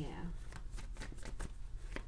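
A deck of tarot cards being shuffled by hand: a continuous run of irregular, quick card snaps and flicks.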